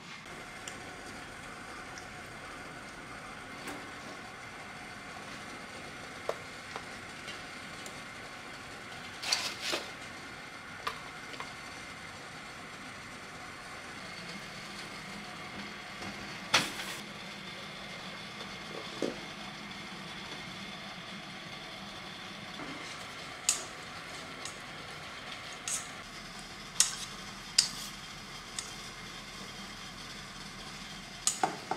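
Kitchen work: scattered clinks and knocks of cookware and utensils over a steady low hiss. One loud knock about halfway through comes as a bamboo steamer is set on a pot of boiling water.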